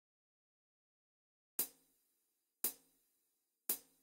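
Silence, then three short, sharp percussion clicks about a second apart: the count-in of a karaoke backing track, just before the band comes in.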